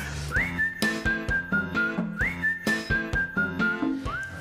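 A short programme jingle: a whistled tune that swoops up and then steps down in three notes, heard twice, over a backing with a steady beat.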